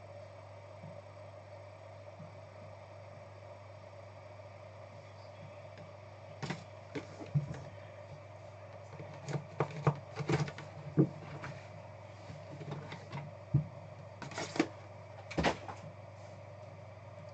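Trading card boxes and a plastic card holder being handled and set down on a table: a scatter of sharp clicks and knocks that begins about six seconds in. The knocks play over a steady low hum.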